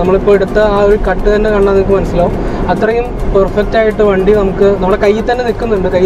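A man talking without pause inside a moving car's cabin, with a low steady hum beneath.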